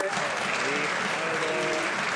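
A chamber full of legislators applauding, with clapping and voices calling out over it.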